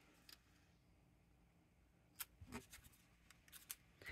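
Near silence with a few faint, short ticks and rustles of cardstock die-cut pieces being handled and laid down, mostly in the second half.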